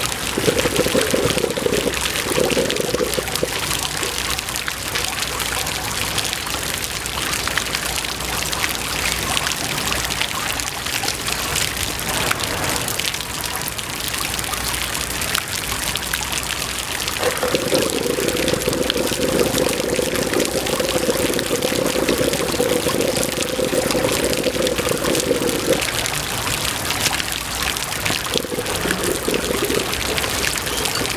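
Water from small fountain jets splashing and pouring onto wet stone paving, steady throughout, with stretches of a fuller, deeper pouring sound.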